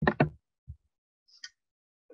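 Two sharp clicks in quick succession, then a soft low thump and a faint click about a second and a half in: computer input clicks as a slideshow is advanced to the next slide.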